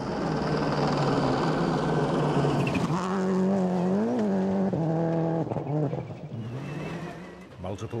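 Subaru Impreza rally car's two-litre four-cylinder engine running hard on a loose gravel stage, with gravel and tyre spray noise for the first few seconds. About four seconds in, the engine note briefly rises and falls, then it fades away.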